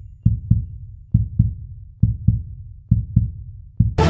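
Heartbeat sound effect: paired low thumps (lub-dub) repeating a little under once a second. A loud ringing musical hit comes in at the very end.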